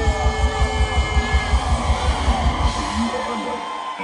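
Live reggae-rock band playing through a concert PA: a fast, even bass-and-drum pulse of about five beats a second under held guitar and keyboard tones. The low end drops out about three seconds in, leaving the higher instruments.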